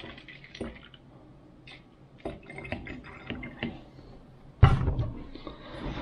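Plastic bottle of alcohol and potash solution being handled, with small clicks and faint liquid sounds. A loud thump comes near the end.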